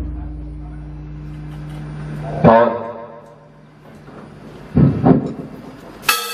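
Slow ceremonial percussion strokes for a funeral minute of silence. One sharp stroke about two and a half seconds in rings on with several clear tones, then two heavier, lower strokes come a third of a second apart near the end, while the ring of an earlier stroke fades in the opening seconds.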